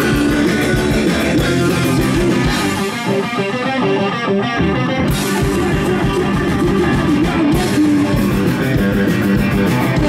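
A live punk rock band playing at full volume: electric guitars, bass guitar and drums. About three seconds in the drums drop out, leaving the guitars, and the full band comes back in about five seconds in.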